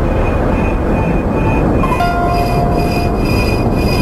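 Steady, loud low rumble of a nuclear explosion, with a few faint high tones held over it.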